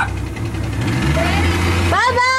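Motorboat engine running steadily under the hiss of water along the hull, with a short voice fragment.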